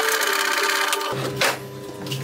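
Table saw blade cutting through a hardwood block, a dense, hissing cut noise for about the first second, then the saw running on with a steady hum. A single sharp knock comes about a second and a half in.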